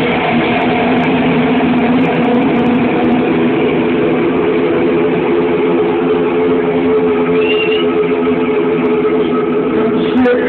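Live rock band sustaining a loud, steady drone of held electric guitar chords, a dense wall of sound with no clear beat.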